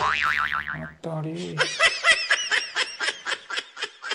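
Comedy sound effects edited onto the clip: a springy boing that wobbles in pitch, then a quick run of short, wavering cartoon-like notes, about five a second.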